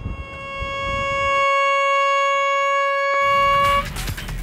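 A horn sounds one long blast at a single steady pitch, lasting nearly four seconds and then cutting off.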